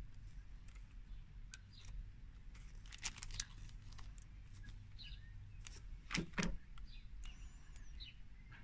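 Small plastic Lego pieces clicking and knocking as they are handled and pressed together, with a cluster of light clicks about three seconds in and two louder ones a little after six seconds, over a steady low hum.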